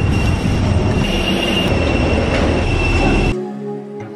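Vehicle ride noise heard from inside: a dense rumble with a steady high-pitched squeal over it. It cuts off abruptly a little after three seconds in, and soft music follows.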